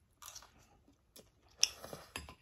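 Close-up eating sounds of two people chewing rice, crisp green mango salad and stir-fried noodles. The sounds come as a few short noisy bursts and clicks, the loudest about one and a half seconds in.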